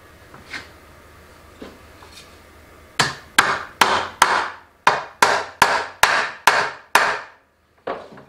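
Small hammer tapping tiny tacks through a brass fitting into wood: a couple of light taps, then about ten quick, sharp strikes in a row starting about three seconds in, each ringing briefly.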